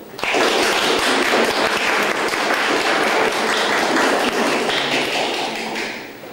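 A small audience applauding after a song. The clapping starts suddenly right after the piano stops, holds steady, then dies away near the end.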